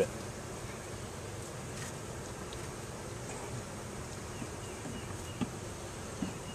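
Honeybee colony buzzing steadily from an opened hive.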